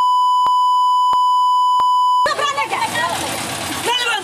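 A steady, high-pitched censor bleep blanks out the speech for a little over two seconds, with a faint click about every two-thirds of a second. It cuts off suddenly and the voices of people arguing in a crowd come back in.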